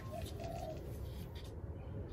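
Two short, low bird calls over faint steady background noise.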